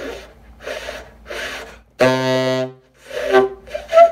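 A tenor saxophone played the way a student tries to play a low note softer. There are breathy puffs of air with hardly any tone, then about halfway through a low note jumps out loud and cuts off, followed by another weaker, airy attempt. The note is either on or off 'like a light switch', which shows a lack of embouchure control at soft volume.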